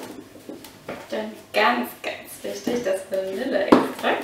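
A woman's wordless voice, with light clattering as a plastic kitchen container is handled and one sharp knock just before the end.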